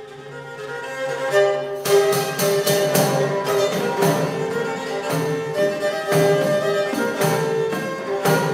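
Medieval-style instrumental music from an early-music ensemble: a bowed fiddle plays a melody over sustained notes. About two seconds in, a steady beat of percussion strokes joins it.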